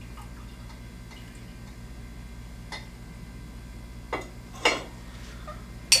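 Glass hydrometer being lowered into a tall glass cylinder of liquid, giving a few light glassy clicks and taps, the louder ones in the last two seconds.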